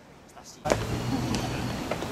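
City street ambience with traffic: a steady rumble of passing vehicles with a low engine hum and scattered sharp clicks, coming in abruptly about half a second in.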